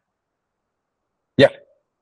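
Dead silence on a video-call line, then a single short spoken "yeah" near the end.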